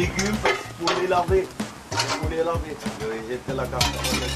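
Kitchen clatter at a steel sink: a spoon and pans clinking and scraping, with several sharp knocks, while a man talks.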